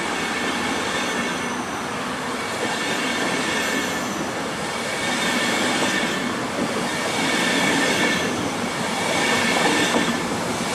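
Railjet passenger coaches rolling past on the rails with a steady rumbling noise and a thin, high-pitched wheel squeal running through it, growing a little louder toward the end.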